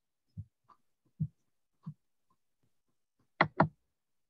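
Soft knocks of a paintbrush working on a stretched canvas: three short dull taps spread over the first two seconds, then two sharper, louder clicks in quick succession near the end.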